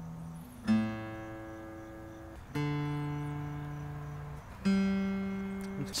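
A spruce-top Traveler Redlands Concert acoustic guitar with three single open-string notes plucked one after another, about two seconds apart. Each is higher than the last and is left to ring and fade. The strings are being checked against the guitar's built-in tuner.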